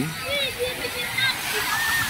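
Shallow sea surf washing in over sand, a steady rushing of breaking waves, with faint voices in the background.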